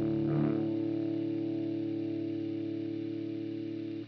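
A guitar's final chord ringing out and slowly fading, with a slight regular wavering in level. There is a short scrape about half a second in.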